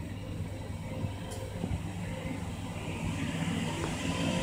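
Hitachi rope-traction passenger elevator car descending through its shaft to the landing: a steady low hum and rumble that grows gradually louder as the car arrives.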